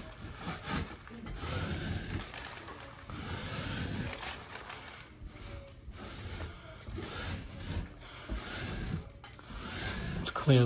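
Metal drywall knife scraping water-soaked popcorn texture off a drywall ceiling in repeated rasping strokes; the wetting has softened the texture so it comes away.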